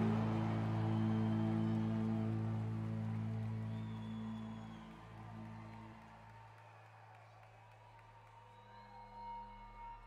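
A live rock band's final chord, electric guitars and bass held and ringing, fading out over about six seconds to a faint background.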